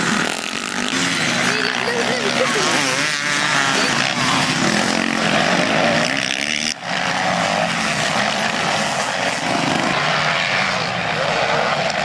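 Motocross bike engines running and revving, the pitch rising and falling as the throttle opens and closes, with a brief sudden drop about two-thirds of the way through.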